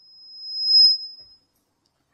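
A single steady high-pitched tone from a handheld microphone's PA system, swelling to a loud peak just under a second in, then fading out about a second and a half in. This is audio feedback ringing.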